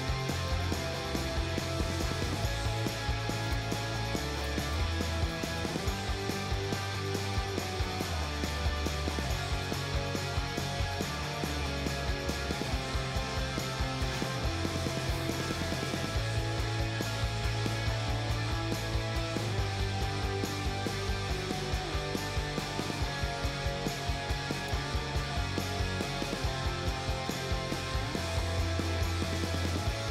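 Background music with a steady beat and a bass line that changes note every second or two.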